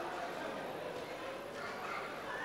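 Faint, indistinct voices over the steady room noise of a large hall, with no clear words.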